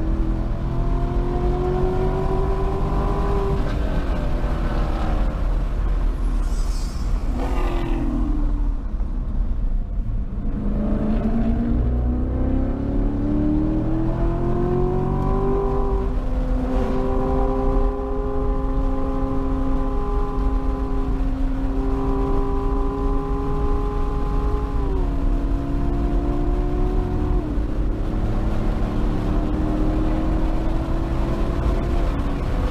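A sports car's engine heard from inside the cabin at track speed, pulling through the gears. The pitch climbs over the first few seconds, falls away in a lull about a third of the way in, then climbs again. It holds nearly steady through the middle and steps down twice near the end before building again.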